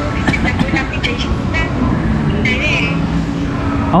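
Indistinct voices over a steady low rumble of room noise, with a brief wavering high tone about two and a half seconds in.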